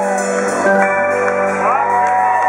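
Live rock band with an electric guitar playing sustained notes that bend up and down in pitch.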